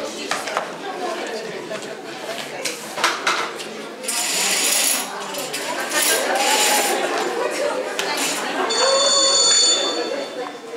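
A telephone starts ringing near the end, a fast trilling ring of several high tones, over voices and noise in the hall.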